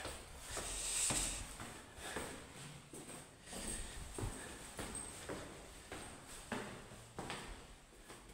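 Footsteps walking up stairs, a step about every second, with some stair-climbing shuffle between the steps.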